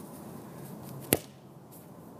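A single short, sharp knock about a second in, which fits a bare foot kicking a soccer ball close by, over faint steady outdoor background noise.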